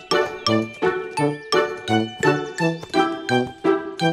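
Upbeat instrumental children's-song music: short, evenly paced notes, about three a second, over a bouncing bass line, with no singing.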